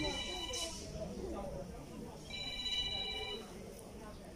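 A high, steady ringing tone sounds twice, about a second each time (once at the start, once about halfway through), starting and stopping cleanly, over low background voices.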